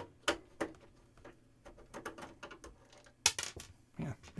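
A run of small, sharp clicks and taps as a screwdriver and a loose screw knock against the plastic back panel of a Power Macintosh all-in-one computer, the loudest about three seconds in.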